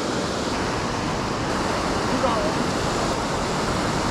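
Water pouring over a low dam spillway: a steady, even rushing. A faint voice is heard briefly a little past halfway.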